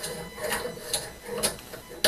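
Light metallic clicks from an 8-inch EGA Master pipe wrench being adjusted and snugged onto a stainless steel tube, its jaw tapping on the metal. There are four or five separate clicks.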